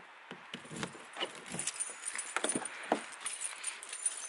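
Handling noise from a handheld camera being moved about in the dark: a run of irregular small clicks and rustles, a little busier after the first half second.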